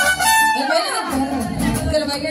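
Live mariachi band playing: held melody notes over a strummed rhythm, with a falling run about half a second in while the bass drops out for a moment before coming back in.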